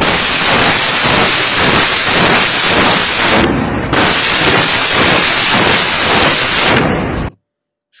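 BM-21 Grad multiple rocket launcher firing a salvo: a loud, continuous rushing noise that cuts off suddenly near the end.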